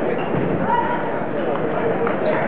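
Indistinct voices of people talking in a large hall, with a few faint taps of a table tennis ball.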